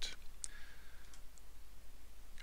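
Computer mouse clicking: one click about half a second in, then two fainter ticks, over a low steady hum.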